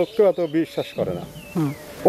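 An insect buzzing near the microphone, under a man's short spoken phrases.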